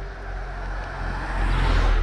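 A car passing close by: its road and engine noise swells to a loud peak near the end.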